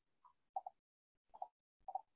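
Faint short clicks, mostly in quick pairs, heard three or four times over a faint background hiss.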